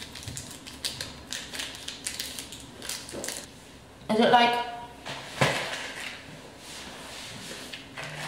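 Plastic snack packaging crinkling and clicking as it is handled and opened, with a brief vocal murmur about four seconds in.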